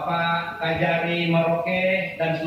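A man's voice in a drawn-out, chant-like delivery, held on long steady pitches with short breaks.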